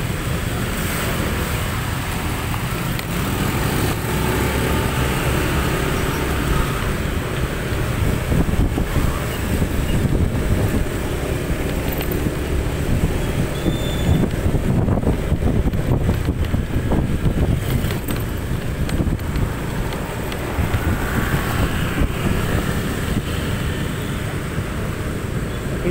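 Motorcycle ride heard from the rider's own bike: a steady low rumble of engine and wind on the microphone, with other scooters running close by.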